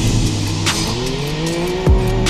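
Can-Am Maverick X3 side-by-side's turbocharged three-cylinder engine pulling along a sandy trail, its revs climbing through the second half, under an overlaid trap beat with deep bass and drum hits.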